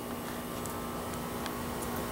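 A steady low hum with a few faint clicks.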